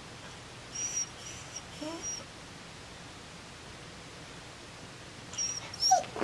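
Dog whimpering: a few short, high-pitched squeaks about a second in, with a brief rising whine, then more squeaks near the end.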